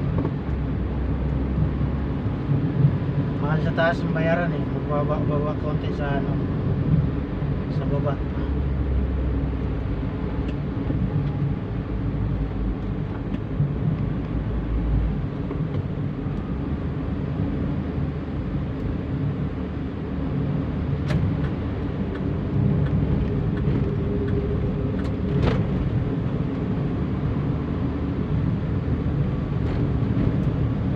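Steady low road and engine rumble heard from inside a moving vehicle in slow city traffic, with faint voices briefly about four to six seconds in and a few light clicks later on.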